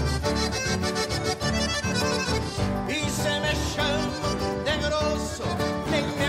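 Diatonic button accordion playing a lively gaúcho folk melody over a steady rhythmic accompaniment.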